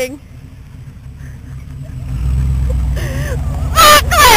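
Engine of a Chevy Blazer-based 4x4 pickup running at low revs, a low rumble that grows louder from about a second in as the truck comes close.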